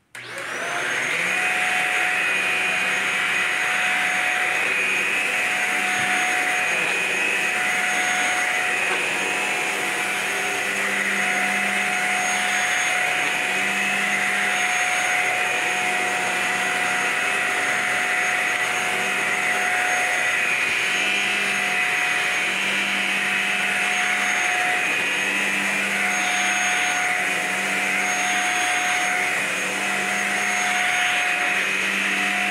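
Shark Apex upright vacuum switched on, its motor spinning up within the first second, then running steadily with a constant whine as it is pushed over carpet.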